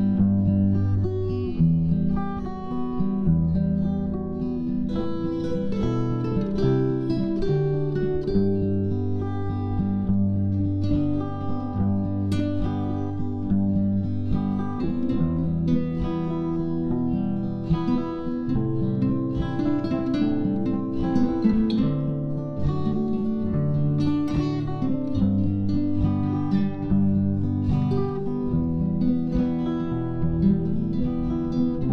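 Two acoustic guitars playing an instrumental duet, one picking a bass line and chords while the other plays the melody with plucked single notes.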